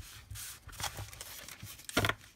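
Stack of paper decal sheets being handled: a few short, irregular rustles and slides of the sheets against each other, the loudest near the end as the stack is lifted.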